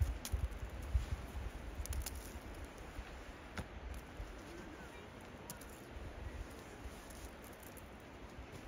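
Quiet outdoor ambience: an uneven low rumble with a few faint sharp clicks scattered through it.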